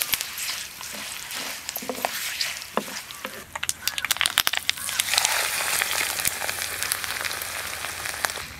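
Curry leaves, dried red chillies and seeds frying in hot oil for a tempering, a steady sizzle with many sharp crackles and pops as a wooden spatula stirs them. The sizzle and crackling grow louder and denser about halfway through.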